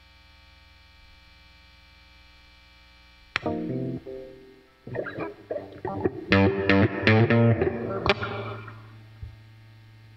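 Electric guitar played through a miked amplifier. The amp hums steadily for the first three seconds, then a chord is struck about three seconds in and left to ring. A quick run of notes and chords follows in the second half.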